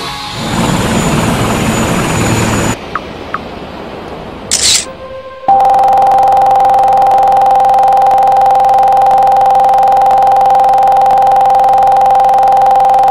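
Electronic advert music ends after a couple of seconds, followed by a quieter gap with two faint ticks and a brief swish. From about halfway through, a loud, steady electronic tone holds at one unchanging pitch.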